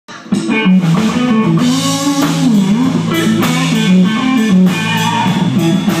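Electric guitar playing a country-style tune with bent notes, over a bass line and a steady drum beat, starting about a third of a second in.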